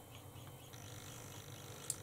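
Quiet room tone: a faint steady hiss, with a small click near the end.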